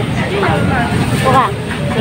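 People talking at a fish stall, haggling over a price, over a steady low rumble of market background noise.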